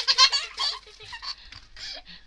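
A toddler giggling in a quick run of high-pitched bursts, loudest at the start and tailing off. A man laughs near the end.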